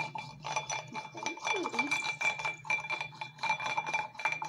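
A wooden stick stirring in a drinking glass, knocking against the glass walls in a rapid run of clinks, several a second, with the glass ringing a steady high tone.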